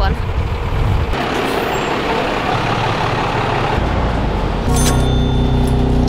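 A large bus's engine running at a stop, first as a broad rushing noise, then from about three-quarters of the way in as a steady low drone heard from inside the bus.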